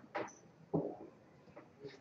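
A pause between spoken lines: a couple of faint, short breaths and mouth noises within the first second, then near quiet room tone.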